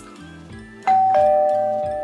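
A two-note ding-dong chime, a higher note followed about a quarter second later by a lower one, both ringing on and slowly fading. It plays over quiet background music.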